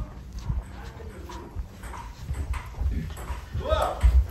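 Irregular low thuds of footsteps as someone walks through a house carrying the camera, with the phone jostling. Near the end comes a short vocal sound that rises and falls in pitch.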